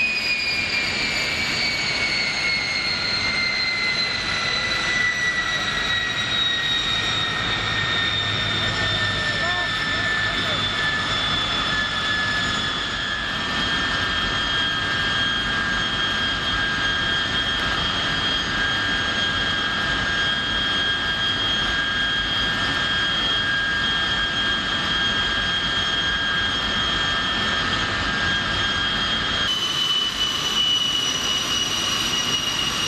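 Gloster Meteor's Rolls-Royce Derwent turbojets running on the ground, a steady roar with a high whine. The whine slides down in pitch over roughly the first fifteen seconds, as the engines settle back, then holds steady.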